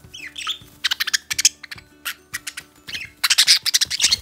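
Pet budgerigar calling: a rapid run of short, shrill chirps in several bursts, loudest near the end.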